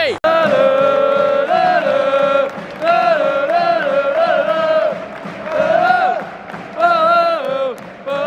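Singing in a football stadium: a sung melody in phrases with long held notes and glides. It briefly cuts out just after the start.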